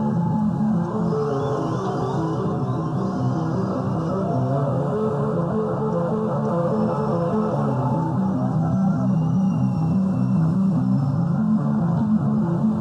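Electric bass guitar played solo live, a run of low notes repeating in an even pattern, dull and thin in the highs.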